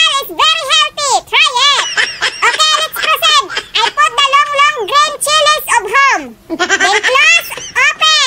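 A very high-pitched, squeaky voice chattering in quick phrases with no clear words, its pitch sweeping up and down, with a short pause about six seconds in.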